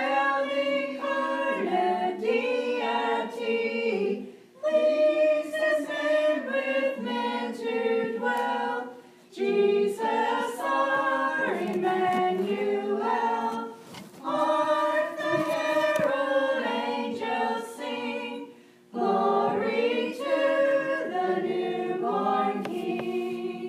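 Mixed church choir of men and women singing unaccompanied, in phrases a few seconds long with brief breaths between them.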